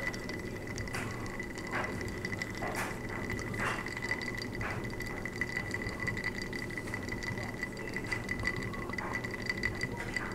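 Gulps of a Bloody Mary drunk from a glass: about five swallows roughly a second apart in the first half, then quieter mouth sounds, over a steady high-pitched whine.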